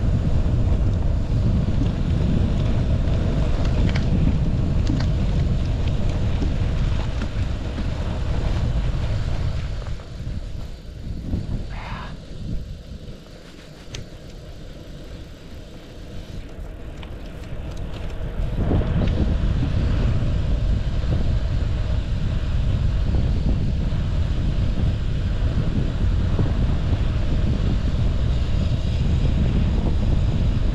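Wind rumbling on a GoPro's microphone as it rides along on a moving bicycle. The rumble eases off for several seconds from about a third of the way in, then comes back as strong as before.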